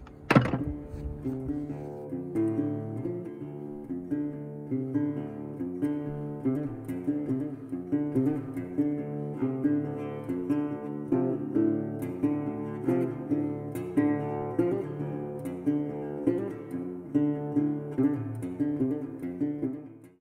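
Outro music on acoustic guitar: plucked notes over a repeating chord pattern, opening with a sharp strike.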